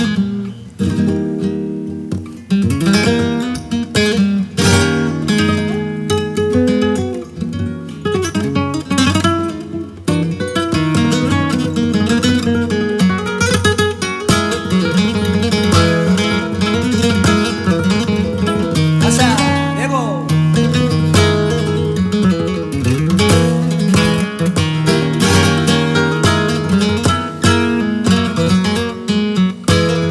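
Flamenco guitar playing picked melodic runs broken by strummed chords.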